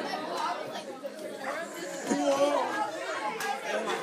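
Teenagers laughing and chattering together, several voices overlapping.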